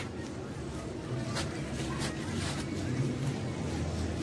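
Outdoor neighbourhood background: a steady low rumble with faint distant voices and a few light clicks.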